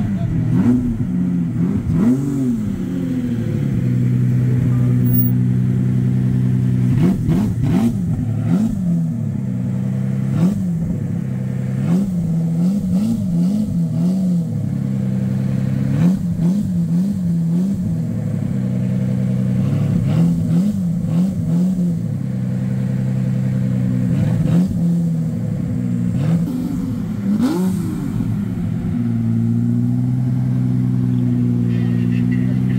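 Lamborghini Diablo VT's V12 engine idling, blipped repeatedly on the throttle so the note rises and falls, sometimes in quick runs of several blips.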